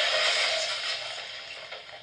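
Movie soundtrack audio playing through a Dell Inspiron 3800 laptop's small built-in speakers: thin, with no bass, and fading down over the second half.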